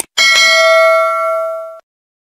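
Subscribe-animation sound effect: a short mouse-style click, then a notification bell struck twice in quick succession and ringing for about a second and a half before cutting off sharply.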